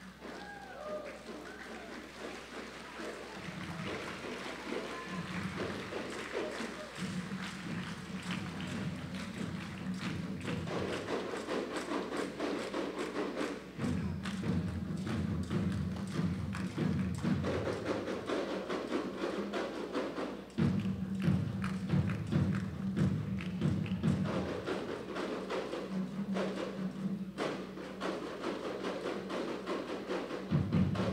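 Percussion music made of many quick drum beats, growing louder after the first few seconds.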